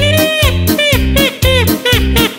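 Romagnolo folk polka played by a band: a saxophone carries the melody in quick, arching notes that slide and bend in pitch, over a steady oom-pah accompaniment of bass notes and chords.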